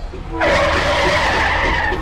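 Skidding brake-screech sound effect: one long, steady screech, slightly falling in pitch, that starts about half a second in and stops abruptly near the end.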